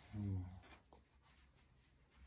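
Faint handling of a leather knife sheath holding a fixed-blade knife and firesteel, with one light click just under a second in. Before it, a brief low hum from a man's voice is the loudest sound.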